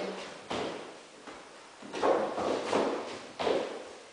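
Dancers' shoes striking and scuffing a wooden floor in Charleston steps, five or six footfalls a little under a second apart, each with a short echo.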